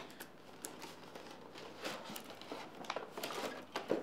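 A cardboard headphone box being opened by hand and a clear plastic packaging tray pulled out: irregular rustling, crinkling and small clicks and scrapes of cardboard and plastic, busier in the second half.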